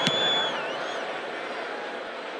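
Stadium crowd noise, with one sharp thud right at the start as the punter's foot strikes the football. A thin high tone ends about half a second in.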